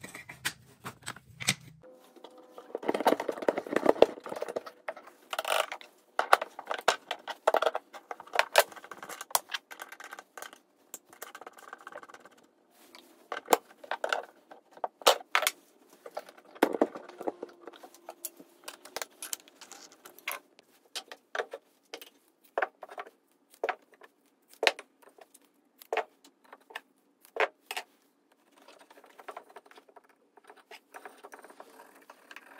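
A run of irregular metallic clicks, clinks and knocks from hands working at a router table: the insert plate and its wrench are handled while the router's collet is changed from quarter-inch to half-inch and a heavy helical carbide-insert router bit is fitted.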